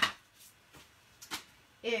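A few faint, brief taps and clicks of card stock and craft supplies being handled on a table, the loudest pair about a second and a quarter in. A woman's voice is heard at the very start and near the end.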